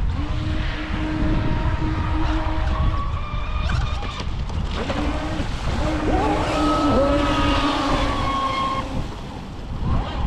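Electric motors of radio-controlled speedboats whining as they run across the water, the pitch rising and falling as the throttle changes, over heavy wind noise on the microphone.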